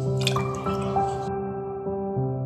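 Liquid seasoning poured into a stainless steel pot of water, a splashing pour that stops abruptly about a second in. Soft background music plays throughout.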